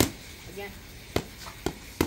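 Boxing gloves smacking focus mitts: one sharp punch right at the start, then a quick pair of punches about a second later.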